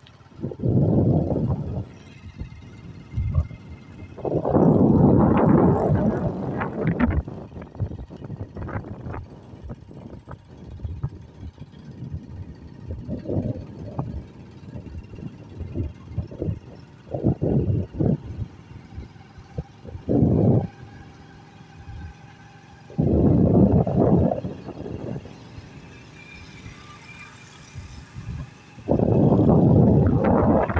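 Wind buffeting the microphone of a moving vehicle in irregular gusts, each lasting a second or two, over the steady low rumble of the ride along the road.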